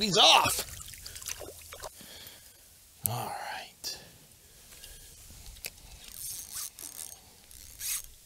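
A short wordless vocal sound at the start and another about three seconds in, with light rustling, scraping and clicks of handling in between.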